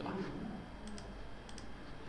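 A few quick clicks of a computer mouse or keyboard, bunched about a second in, confirming a value and closing a software dialog.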